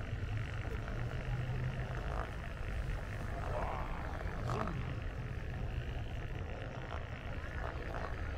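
Steady low rumble of a Onewheel rolling over stone paving, with faint voices of passers-by.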